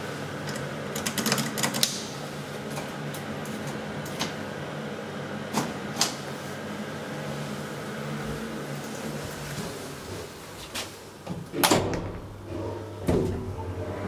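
KONE elevator car running with a steady hum and occasional light clicks, the hum dropping away about ten seconds in as the car stops. Near the end come a loud clatter and then a knock as the doors are opened onto the landing.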